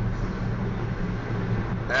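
Steady low drone of a car's engine and road noise heard inside the cabin while driving.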